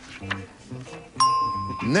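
Game-show think music with plucked bass notes, cut off about a second in by a bright electronic ding held for about half a second that signals the panelist has finished writing. Speech begins at the very end.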